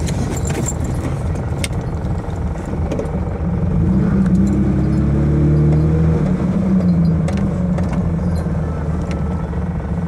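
Car engine and road noise heard from inside the cabin of an older sedan moving slowly; the engine hum grows louder and steadier from about three and a half seconds in and eases off again after about seven seconds. A few light clicks and rattles sound over it.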